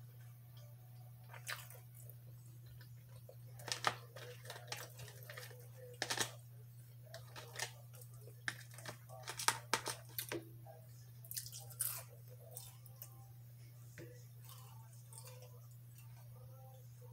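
Close-up chewing and mouth sounds of a person eating sweet potato fries: scattered sharp clicks and crackles, busiest in the middle, with the faint handling of fries in a plastic container. A steady low hum runs underneath.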